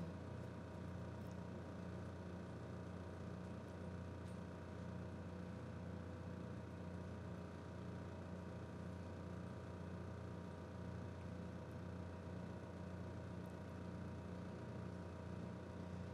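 Quiet, steady hum of room tone through the stage microphones, unchanging throughout, with no other sounds.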